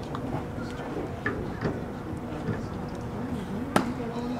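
A pitched baseball hitting the catcher's leather mitt: one sharp pop near the end, over steady background chatter from the crowd.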